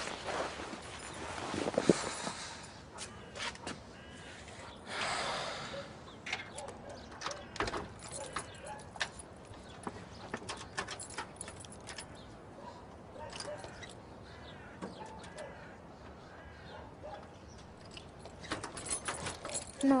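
Footsteps and rustling, with faint bird chirps in the background. A door handle rattles and clicks near the end.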